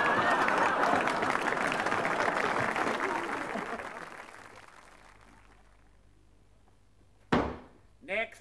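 Studio audience laughing and applauding, fading out over the first four to five seconds. Near the end, a single sharp thud.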